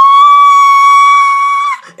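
A person's voice shrieking one long, shrill high note. It slides up into the note, holds it steady, wavers slightly and breaks off shortly before the end.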